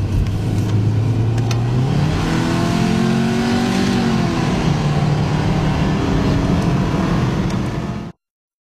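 Subaru Outback's 2.5-litre flat-four engine heard from inside the cabin while driving: its note climbs under acceleration for a couple of seconds, then drops back and settles, over steady road and tyre noise.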